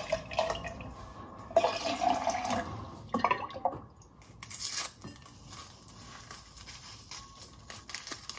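Milk poured from a carton into a metal tumbler of coffee, a splashing pour lasting a couple of seconds, with knocks of containers on the counter around it.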